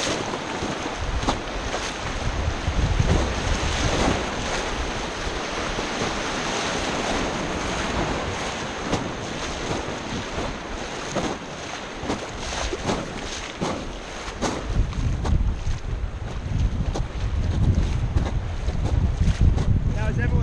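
River water rushing over shallow rapids around an inflatable raft, with wind buffeting the microphone in gusts, strongest near the end.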